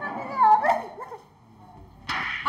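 A woman crying: a high, wavering, whimpering wail that fades out about a second in.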